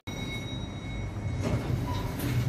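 Steady low rumble of an elevator car travelling, heard from inside the cabin, with faint thin high tones that fade out about a second in.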